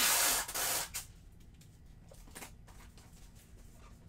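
Two short, loud rasping noises within the first second, then a couple of faint knocks, from a small cardboard shipping box being packed and handled.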